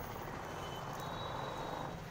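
Steady outdoor background noise with no distinct event, and a faint thin high tone coming in partway through.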